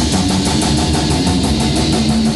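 Instrumental metal band rehearsal: electric guitar and drum kit playing together, loud and dense, with a fast, even pulse of drum hits.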